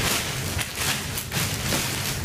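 Thin clear plastic bag crinkling and rustling as it is pulled and smoothed down over a stack of fabric box cushions, in a run of irregular crackles.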